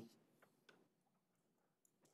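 Near silence: room tone, with a few faint short clicks.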